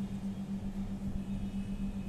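A steady low hum with a faint rumble beneath it, and nothing else distinct.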